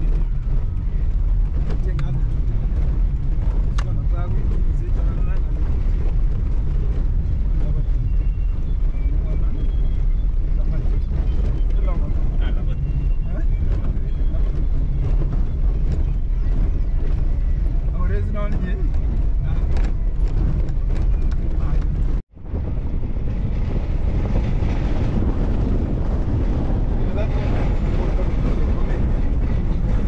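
Steady low rumble of a car's engine and its tyres on a dirt road, heard from inside the cabin. It breaks off for an instant about two-thirds of the way through.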